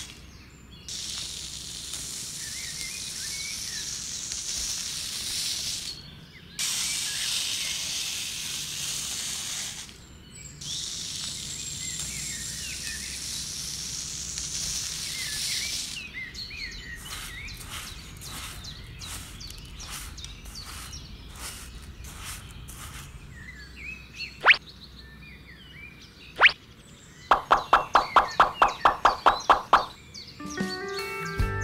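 Fine white sand poured from a small plastic scoop into a plastic tray, a steady hiss in three long pours with short breaks between them. Then soft rustles and light taps as the sand is spread by hand, two sharp clicks, and near the end a fast, even run of about a dozen loud clicks.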